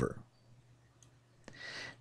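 A few faint computer mouse clicks spaced about half a second apart, as the mask is dragged into place in the editing software, then a short breath near the end.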